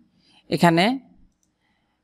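A man's voice says one short word about half a second in, then little but faint room tone.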